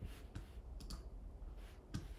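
A few scattered sharp clicks from a computer's mouse or keys, the loudest near the end, over a faint steady low hum.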